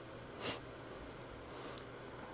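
A single short click about half a second in as a plastic power-strip rocker switch is flipped off, over a faint steady room hum.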